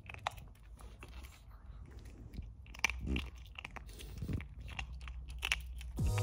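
Small Yorkshire terrier chewing a treat: a few faint, crisp crunches scattered through.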